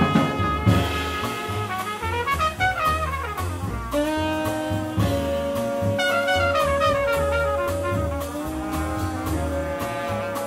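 Small jazz group playing live: tenor saxophone, trumpet and trombone together over piano, upright bass and drums. The horns move through short phrases and hold several long notes, one of them for about three seconds in the middle.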